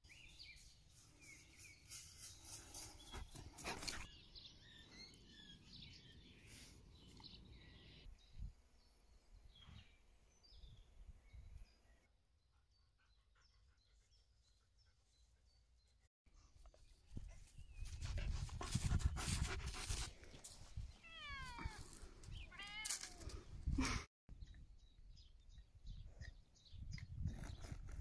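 Quiet outdoor ambience in several short cut-together clips, with a run of high animal calls, each falling steeply in pitch, about two thirds of the way through.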